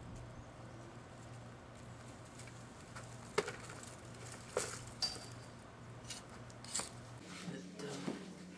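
Garden digging fork and a leafy plant being worked out of the soil, with a few scattered sharp knocks and rustles over a steady low hum.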